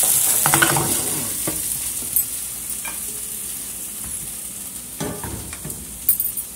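Onion-tomato masala sizzling in a nonstick frying pan as a wooden spatula stirs and scrapes it, with a few light clicks. The sizzle fades gradually.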